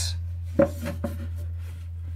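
A wooden cigar box handled against a wooden guitar neck blank: a few light knocks and a brief rub about half a second to a second in, over a steady low hum.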